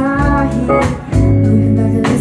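A live band playing: electric guitar, electric bass and keyboard holding sustained notes over drum hits.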